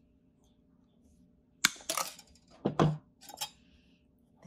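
Side cutters snipping through 16-gauge armature wire: one sharp snap about a second and a half in, followed by light clicks of the wire being handled and a heavier knock a little before three seconds in.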